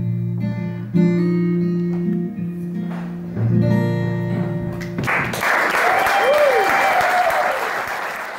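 Acoustic guitar playing the closing notes of a song, a few chords left to ring. About five seconds in, the audience breaks into applause with one voice cheering over it, fading out near the end.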